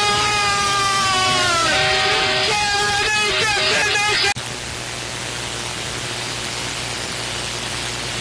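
Arena goal horn sounding right after a goal: a long, loud held chord that sags in pitch near the two-second mark, followed by shorter tones. About four seconds in the sound cuts off abruptly to a steady hiss of arena noise.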